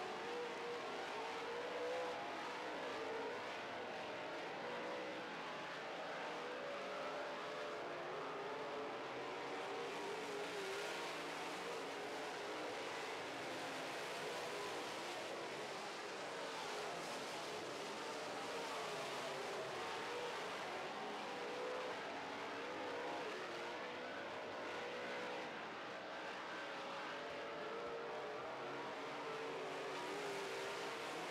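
A field of dirt-track modified race cars running at speed, several engines together in a steady mix whose pitch wavers up and down as the cars circle the track.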